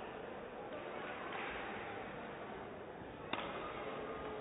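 Steady hall ambience, with a single sharp crack of a badminton racket striking the shuttlecock a little over three seconds in.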